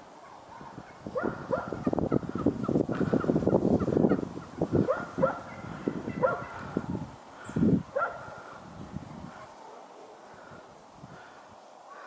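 A flock of wild turkeys calling: a run of short, rapid calls with falling notes, loudest about two to four seconds in and dying away after about nine seconds.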